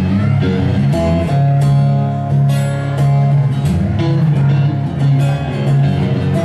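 Guitars strummed in a rhythmic instrumental intro to a live song, with sustained low notes under the chords.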